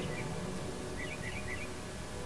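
Faint night-time outdoor ambience: short high chirps from a small animal, in two brief runs of a few each, over a steady low hum.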